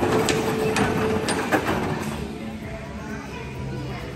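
Electric spinning bumper cars running: a steady motor hum with several sharp clacks and knocks in the first second and a half, then fading into background voices.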